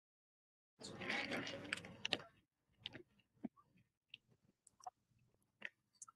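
Faint rustling for about a second and a half, then a handful of soft, scattered clicks.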